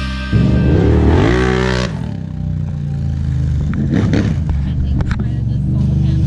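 A loud passage of music cuts off about two seconds in, leaving a vehicle engine running steadily at idle, with a few sharp clicks.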